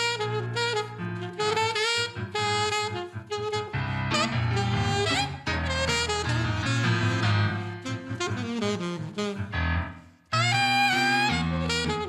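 Live jazz duo: a saxophone plays a bending, expressive melody over chords from a Nord Stage 88 stage keyboard. Both drop out for a brief pause near the end, then come back in together.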